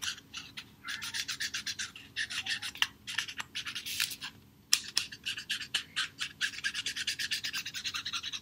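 Felt-tip marker rubbing and scratching along the fluted rim of a paper plate, colouring it red. It makes quick, short strokes, several a second, in three runs broken by brief pauses.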